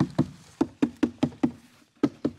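Kärcher floor sweeper's plastic dirt hopper being rapped and shaken upside down over a trash can to empty it: a quick, even run of knocks, about six a second, that stops shortly before the end.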